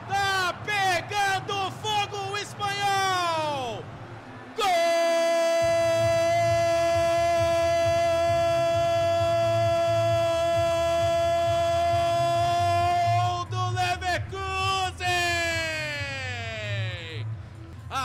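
Football commentator shouting excitedly as a goal goes in, then one long held goal cry of about nine seconds on a steady pitch, then more shouting. A low pulsing beat runs underneath.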